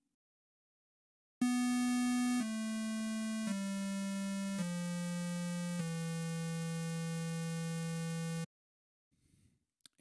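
ReaSynth software synthesizer set to a square wave, playing five notes that step down in pitch one after another. The first note is a little louder, and the last is held for about three seconds before it cuts off.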